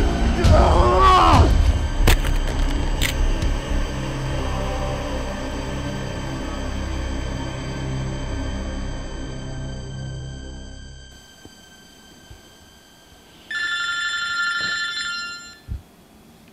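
A man screams in the first second and a half, then a low, droning horror score plays and fades out about eleven seconds in. Near the end a phone rings once, a short electronic ring.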